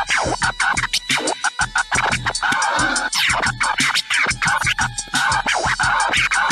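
Turntable scratching over a beat: a vinyl record pushed back and forth under the stylus, making quick rising and falling sweeps over a fast, even drum pattern.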